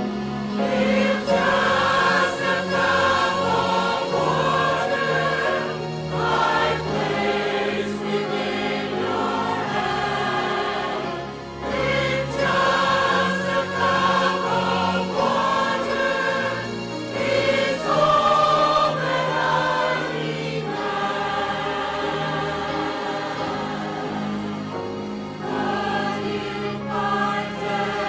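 Mixed church choir of men's and women's voices singing a sacred anthem in parts, with sustained low instrumental accompaniment underneath.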